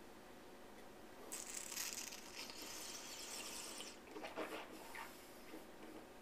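A wine taster's faint slurp, drawing air through a mouthful of white wine to aerate it: a soft, airy hiss lasting about two and a half seconds, followed by a few short, faint sounds about a second later.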